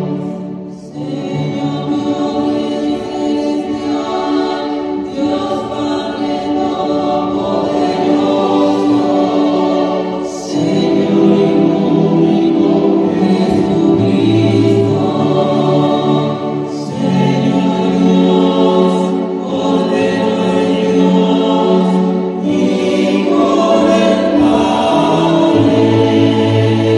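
Church choir singing a Mass chant with keyboard accompaniment, in sustained phrases over a steady bass, with short breaks between phrases about a second in, around ten seconds in and around seventeen seconds in.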